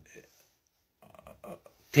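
A pause in a woman's speech: her voice trails off, then faint breath and mouth sounds about a second in, before she speaks again.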